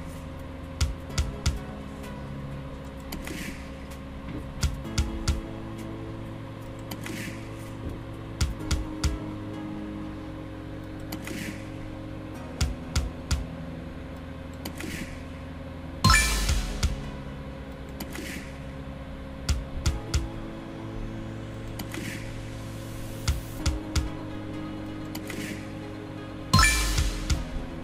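Video slot machine game sounds: steady electronic reel-spin tones that change pitch from spin to spin. A cluster of short clicks as the reels stop comes about every three to four seconds as spins follow one another. A louder sudden burst comes about 16 seconds in.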